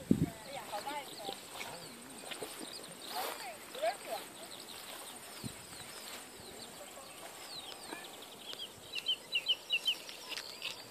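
Birds calling and chirping outdoors, with a quick run of high chirps near the end. A brief low thump, like handling of the camera, comes right at the start.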